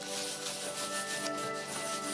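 A drawing tip scratching and rubbing across watercolor paper in quick, irregular strokes as a line drawing is made. Soft background music with held notes plays underneath.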